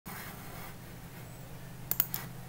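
A faint steady low hum with light hiss from the recording setup, and two quick clicks just before the end.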